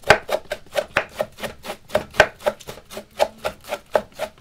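Knife shredding a head of green cabbage on a wooden board: quick, even slicing strokes, about five a second.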